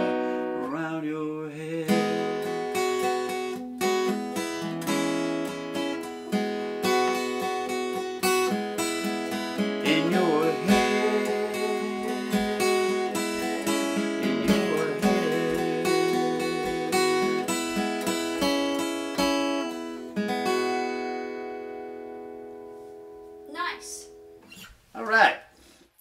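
Acoustic guitar playing a song's closing bars, with a voice coming in briefly now and then. Well past the middle a final chord rings and slowly fades out, and two short sounds follow near the end.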